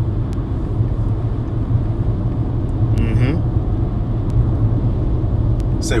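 Steady low rumble, with a brief murmur from a voice about three seconds in.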